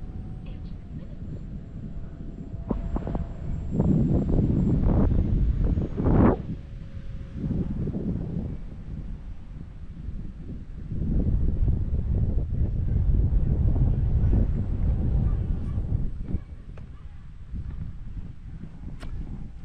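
Wind buffeting the microphone in gusts, loudest about four to six seconds in and again from about eleven to sixteen seconds. Under it is the faint, steady, high whine of a distant electric-ducted-fan RC jet, its pitch stepping down a couple of times.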